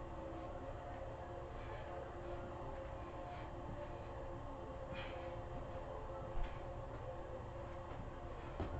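Steady low mechanical hum of a machine running, with a few faint clicks and a single dull thump about six seconds in.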